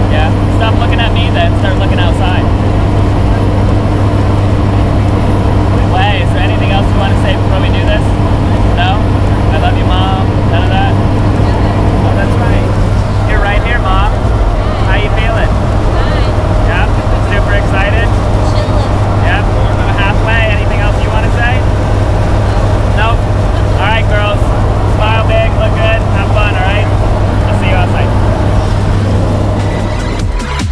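Loud, steady drone of a skydiving jump plane's engines heard inside the cabin during the climb, with faint voices over it. About twelve seconds in, the tone of the drone changes slightly.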